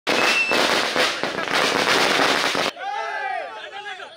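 A string of firecrackers going off in a rapid, loud crackle that stops abruptly a little under three seconds in, followed by a crowd of men talking and shouting.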